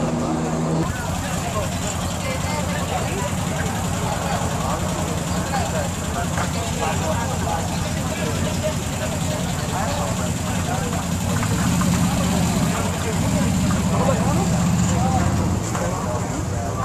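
Trophy-truck race engine idling as the truck creeps along at walking pace, growing louder near the end. Background crowd chatter is mixed in.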